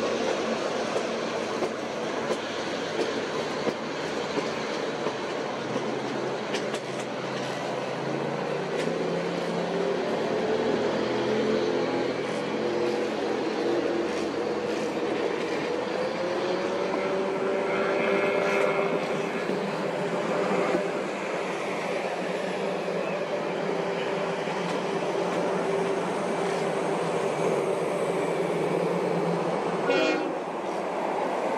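A passing train's diesel units and yellow passenger cars rolling by on the rails, a steady rumble of wheels on track. A faint sustained tone runs through it and steps up in pitch about halfway through.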